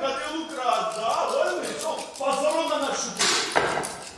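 Actors' voices speaking on stage, with a short noisy burst a little after three seconds in.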